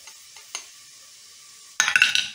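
A few light clicks of a wooden spoon scraping minced garlic off a small bowl into a stainless steel pot, over a faint steady sizzle of diced onion in melted butter. Near the end the spoon starts stirring, scraping loudly across the pot's base.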